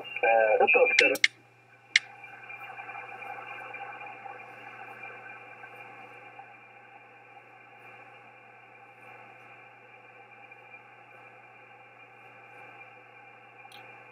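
Icom IC-7610 shortwave transceiver on upper sideband. A station's voice ends about a second in, and two sharp clicks follow as the rig retunes. After that comes steady band noise in a narrow voice passband, with no signal heard on 18.110 MHz: no propagation to the spotted beacon.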